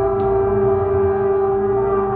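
Trumpet, run through effects pedals and loops, holding one long steady note over a layered drone of looped sustained tones. A brief click sounds just after the start.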